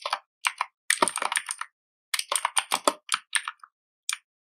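Typing on a computer keyboard: quick runs of key clicks in two bursts, with a short pause between them.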